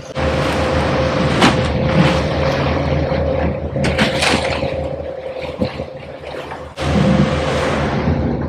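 A boat running at speed: a steady rush of wind and water over the drone of twin outboard motors. A few sharp knocks come about a second and a half in and again around four seconds in, as fish and ice are handled in the fish box.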